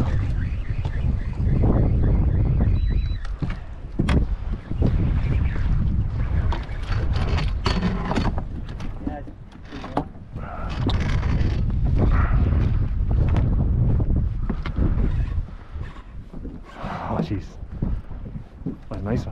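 Wind buffeting the microphone in a heavy low rumble, with a couple of sharp knocks about four seconds in.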